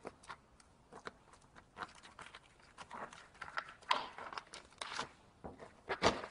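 Hands pressing and working uncured EPDM flashing down around a pipe: faint, irregular rustling and rubbing of the rubber and its backing paper, with a few small clicks.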